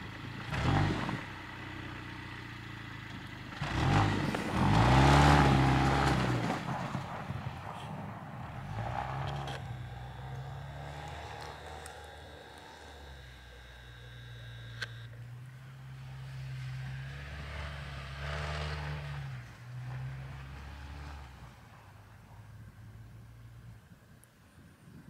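2017 Jeep Renegade Trailhawk's 2.4-litre four-cylinder engine revving up and down as the Jeep spins doughnuts in deep snow. The revs rise and fall several times, loudest about four to six seconds in, and die down near the end.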